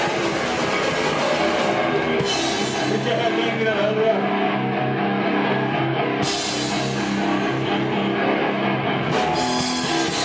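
Grindcore band playing live: heavily distorted electric guitars and drums in a loud, dense passage without vocals. The high cymbal wash thins out about two seconds in and comes back sharply at about six seconds, under long held guitar chords.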